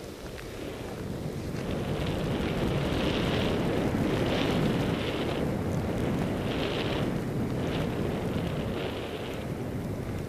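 Wind buffeting a helmet camera's microphone while skiing downhill through deep powder, growing louder over the first few seconds, with short bursts of hiss every second or so.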